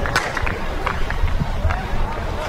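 Footballers' distant shouts and calls during play, with a few sharp knocks of a football being kicked, over a steady low rumble.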